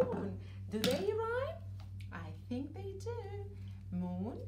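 A voice humming and speaking in sing-song snatches, over a steady low electrical hum.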